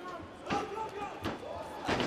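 Three sharp thuds of blows landing and bodies hitting in an MMA exchange, about three-quarters of a second apart.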